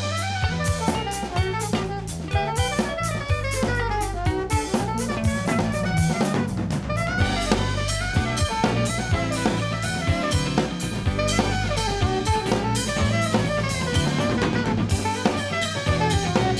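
A live band playing an instrumental break: a saxophone solo over drum kit and electric bass, with a steady beat of snare and kick.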